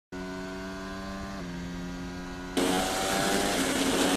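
Onboard engine sound of a Red Bull Formula 1 car's turbo-hybrid V6 running at speed: a steady pitched tone that dips slightly about a second and a half in. At about two and a half seconds it turns suddenly louder, with rushing wind and road noise added.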